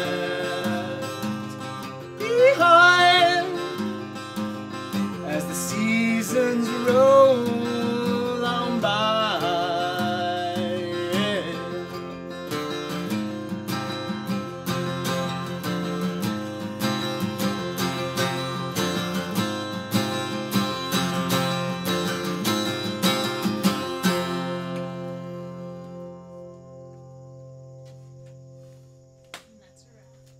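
Acoustic guitar strummed in steady chords, with a man singing a long, wavering melody over roughly the first twelve seconds. About twenty-four seconds in the strumming stops, and the last chord rings out and fades away, ending the song.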